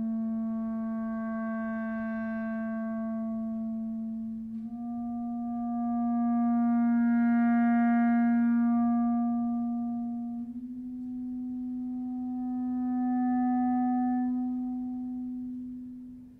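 Solo clarinet holding three long low notes, each a small step higher than the one before. The second and third notes swell louder and then fade, and the last dies away near the end.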